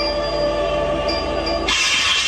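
Performance backing track over the stage loudspeakers: several steady sustained tones held together, switching abruptly about 1.7 s in to a loud hissing, rushing sound.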